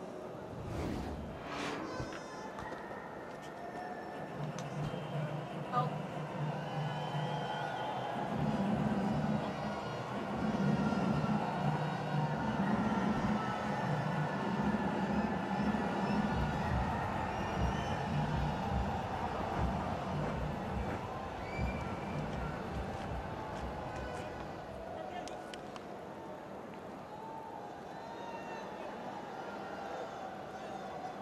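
Background sound at a cricket ground: music playing over the public-address system, with indistinct voices.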